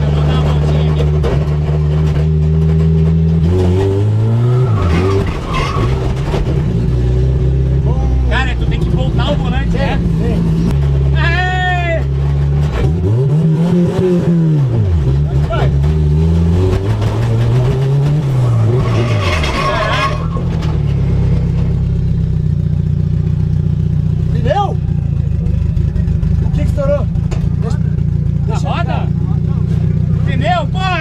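Chevrolet Chevette drift car's turbocharged VW AP four-cylinder engine heard from inside the cabin, running steadily under way. The revs rise and fall a few times: about four seconds in, and in two swells between about 13 and 19 seconds.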